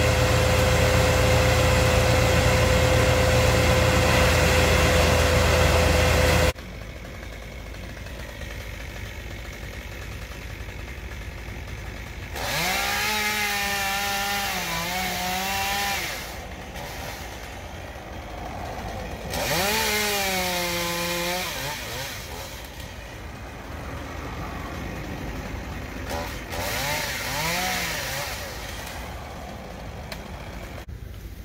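A brush chipper runs steadily with a strong low hum and a held tone. It stops abruptly about six seconds in. After that, a chainsaw cuts into a tree trunk at a distance in three separate spells of revving, the last one fainter, with its pitch dipping and rising as the chain bites into the wood.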